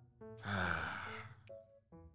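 A man's sigh: one breathy exhale about a second long that trails off, over quiet background music with held notes.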